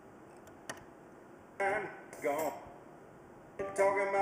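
A sharp click under a second in, then short phrases of a recorded song's singing voice played over a loudspeaker through a capacitor wired in series with it. The capacitor holds back the low frequencies, so the voice comes through with little bass.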